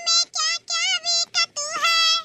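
A high-pitched cartoon-character voice singing a song in several short phrases, its pitch wavering, with brief breaks between phrases.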